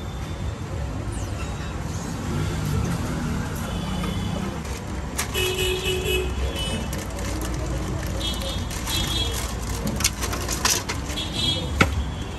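Busy street ambience: a steady traffic rumble with several short car horn toots and background voices. A few sharp clicks and clatters come from handling at the stall, most of them in the second half.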